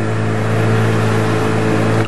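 Motorboat engine running at a steady pitch, a low hum over a constant hiss of water and wind.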